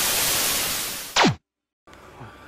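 TV static sound effect: a loud, even hiss of white noise that fades about a second in and ends in a short zap falling steeply in pitch.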